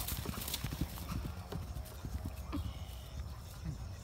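A horse galloping across a grass pasture: a quick, irregular run of hoofbeats on the turf.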